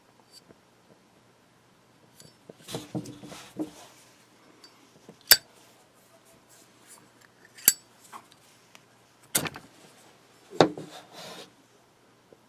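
Zippo windproof lighter handled: its metal lid shuts and is flipped open with two sharp metallic clicks a couple of seconds apart, then the flint wheel is struck, twice with louder rasping strikes near the end, relighting the wick.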